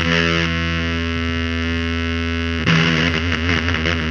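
Instrumental passage of doom metal: heavily distorted electric guitar over bass holding long, ringing chords. A new chord is struck near the start and another about two-thirds of the way in, and it wavers as it rings.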